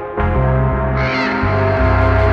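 Music from a DJ mix: a deep bass line changing notes under sustained tones, with a short falling high-pitched sound about a second in.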